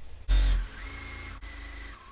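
Electric sewing machine stitching a seam: after a low thump about a third of a second in, its motor whine rises in pitch as it speeds up and then holds steady, with a brief break about halfway through.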